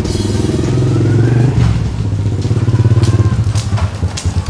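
Small step-through motorcycle engine running as it rides up, its note rising around a second in, then breaking into separate slow chugs near the end as it slows.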